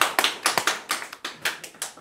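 A small group clapping by hand, the claps thinning out and fading away as the applause ends.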